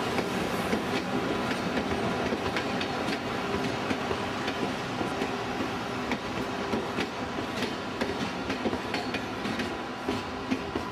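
Passenger coaches of an express train rolling past at speed, with a steady rumble of wheels on rail and repeated sharp clickety-clack clicks as the wheels cross rail joints.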